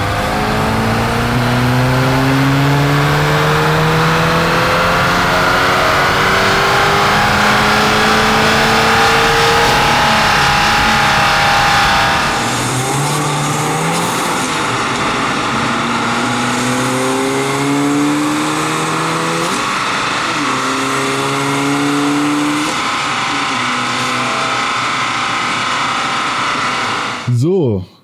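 Swapped VW 2.0 TFSI four-cylinder with an upgraded TTE 485 turbocharger running at full load on a chassis dyno during a power measurement run. Engine pitch climbs steadily for about twelve seconds, then drops and climbs again in several shorter rising steps before cutting off near the end.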